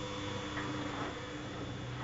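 Bosch Logixx WFT2800 washer-dryer drum turning in the main wash: a steady motor hum with the swish of a wet duvet cover and water tumbling in the drum.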